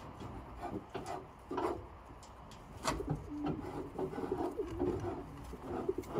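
Domestic pigeons cooing in low, wavering notes, mostly in the second half, with short scuffing and rustling sounds mixed in.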